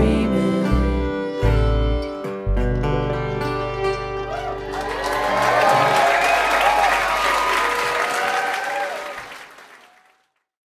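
A bluegrass band of guitar, banjo, fiddle, mandolin and upright bass plays its closing notes, which ring out and stop. About four seconds in, the audience breaks into applause with whoops and cheers, which fades away near the end.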